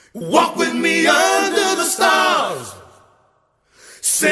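Several voices singing in harmony without instruments: a held chord, then a slide down in pitch together that fades away shortly before the end.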